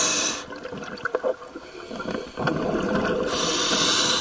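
Scuba diver breathing through a regulator underwater: a short hiss of air drawn through the demand valve right at the start and again near the end, with bubbling exhaled air gurgling out in between.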